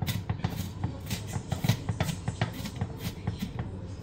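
Kitchen knife chopping onion finely on a cutting board, quick, irregular strikes about five a second.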